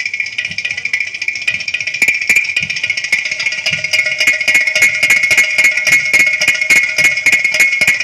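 Live percussion ensemble of hand drums and a clay-pot drum playing a fast, driving rhythm; the strokes grow denser about two seconds in, and a steady held tone joins under them.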